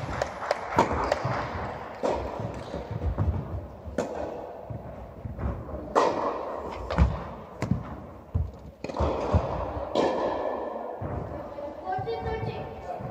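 Tennis balls struck by rackets and bouncing on an indoor court: a serve and then a rally of hits, one every second or two, each ringing on in the large hall.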